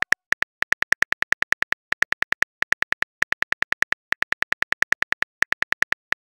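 Simulated smartphone keyboard key clicks: short, sharp, identical taps at about eight a second, in quick runs with brief pauses, as a text message is typed out.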